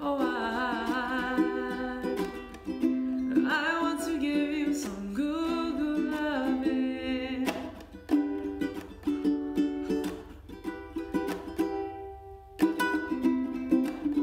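Fender ukulele strummed in chords, with long wavering sung notes without words over it in the first part. The strumming stops briefly about twelve seconds in, then starts again.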